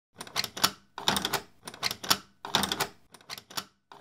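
Sound effect of a metal key rattling and clicking in a door lock that won't open, in about five short bursts of clicks, roughly one a second. The key does not fit the lock.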